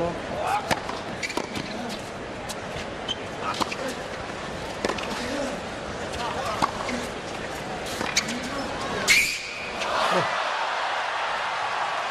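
Tennis rally on a hard court: racket strikes and ball bounces about once a second over crowd murmur. About nine seconds in comes the loudest hit, and the crowd cheers and applauds as the point ends.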